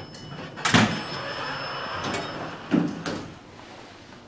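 Dover traction elevator's sliding doors in motion, with a loud clunk just under a second in and another near three seconds. A thin high whine runs beneath and fades out about halfway.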